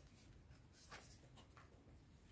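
Near silence with a few faint, short swishes of Osho Zen tarot cards being handled and slid onto a cloth-covered table.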